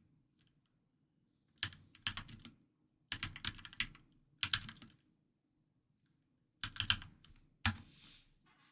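Typing on a computer keyboard: several short bursts of rapid keystrokes with pauses between them.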